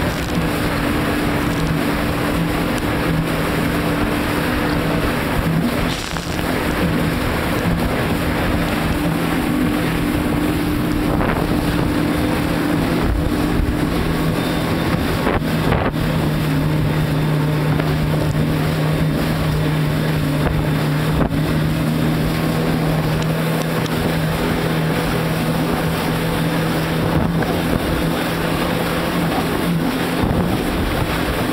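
Personal watercraft (jet ski) engine running steadily at speed while under way on the water, its note shifting slightly about halfway through, with wind rushing over the microphone.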